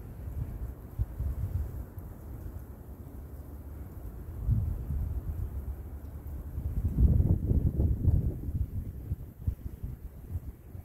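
Wind buffeting the microphone: a low rumble that comes in gusts, with the strongest gust about seven to eight seconds in.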